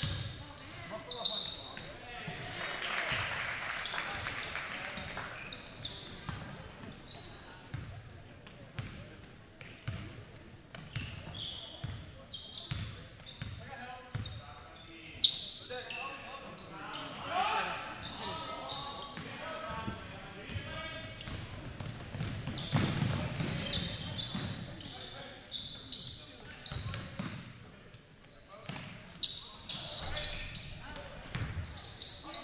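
Live high-school basketball game sound in an echoing gym: a basketball dribbling and bouncing, sneakers squeaking on the hardwood, and players' and spectators' voices. One sharper, louder knock comes about halfway through.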